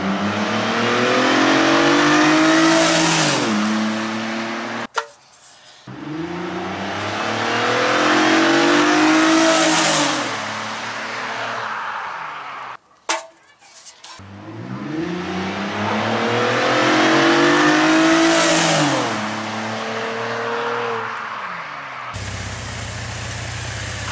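Pontiac G8 with freshly fitted aftermarket mufflers accelerating hard, its exhaust note climbing in pitch and then falling away as the car passes. Three runs, each ending abruptly. In the last two seconds the engine idles steadily close by.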